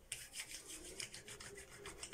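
Palms rubbing together quickly, spreading face cream between the hands: a faint, rapid swishing of skin on skin, about eight strokes a second.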